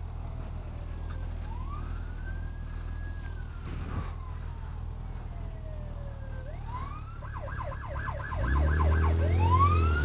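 An emergency vehicle's siren: slow rising and falling wails, then a fast yelp about seven seconds in, and back to a wail near the end, growing louder. Under it runs a steady low engine hum, and a heavier low rumble joins about eight and a half seconds in.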